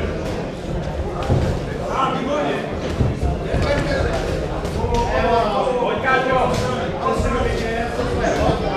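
Voices calling out and talking in a large echoing hall around a boxing ring, with a few sharp thuds from the boxers' punches and footwork on the ring.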